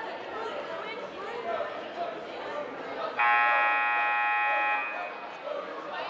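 Gym scoreboard horn sounding one steady blast of about a second and a half, about three seconds in, signalling the end of a timeout, over crowd chatter in the gym.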